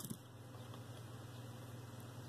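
Quiet room tone with a faint steady low hum; no distinct handling sounds.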